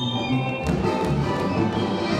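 Lively folk dance music with a steady, regular bass beat. A few sharp taps stand out near the middle.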